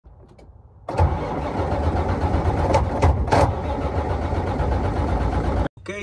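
Starter motor cranking the Freightliner Columbia's diesel engine, which turns over steadily but never fires, until the sound cuts off suddenly near the end. It is a crank-but-no-start that the owner suspects lies in the ECM or its fuses.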